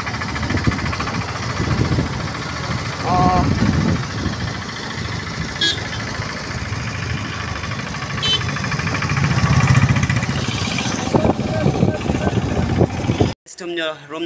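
Motorcycle running, heard from the pillion seat on the move, with a steady low rumble and road noise under a man's talking.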